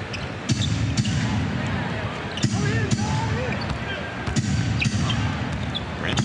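A basketball being dribbled on a hardwood court, sharp bounces coming roughly every half second in stretches, over the steady murmur of an arena crowd.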